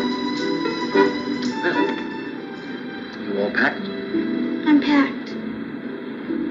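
Soft background music with held notes, played back through a television speaker, with a couple of short voice sounds in the middle.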